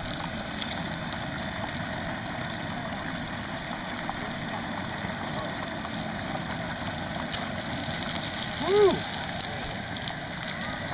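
Hot oil in a turkey-fryer pot sizzling and bubbling in a steady hiss as a whole turkey is lowered in and the oil foams up, over the propane burner. Near the end comes a short, loud call that rises and falls in pitch.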